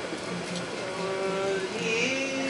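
Acoustic guitar notes ringing and held, with a crowd talking in the room.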